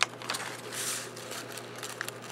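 Crepe paper and a coffee-filter paper envelope handled on a tabletop: a sharp click at the start, then faint paper rustling with a brief louder rustle just under a second in.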